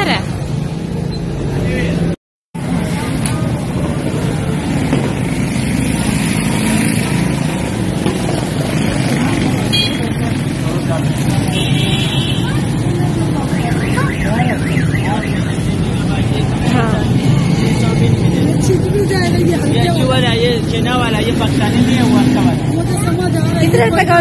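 Busy open-air market: scattered background voices over a steady low rumble and hum. The sound cuts out completely for a moment about two seconds in.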